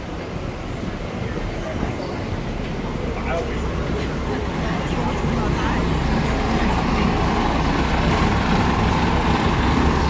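Road traffic noise with the low engine rumble of a double-decker bus, growing steadily louder as the bus draws up close.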